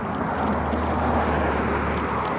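A pickup truck driving past on the street, its engine and tyre noise swelling to a peak about a second in and then easing off.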